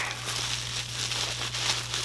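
Plastic wrapping crinkling and rustling continuously as a small collectible figure is unwrapped by hand.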